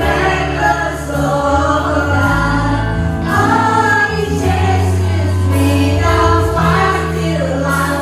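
Live worship band playing a Christian song, with several voices singing together, women leading, over keyboard, acoustic guitar and a steady bass line.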